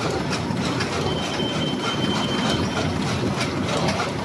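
Die-cutting machine in production running with a steady mechanical clatter and a regular stroke beat of about three a second, along with the conveyor carrying the cut paper blanks away. A thin high whine comes in for a second or two in the middle.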